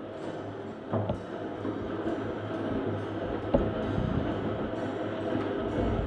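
A 70–80-year-old hand-cranked honey extractor spinning, its geared crank and drum running steadily and getting louder as it picks up speed, with a couple of knocks; it wobbles a little as it turns.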